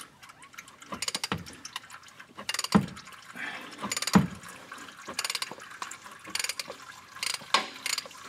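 A ratchet clicking in short runs while a 36 mm socket works the oil filter cap loose, with two louder knocks about three and four seconds in.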